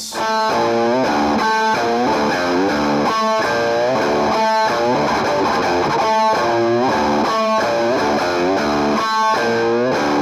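Distorted electric guitar, a custom Fender Jaguar, playing a fast riff of single notes. A short figure repeats about every one and a half seconds.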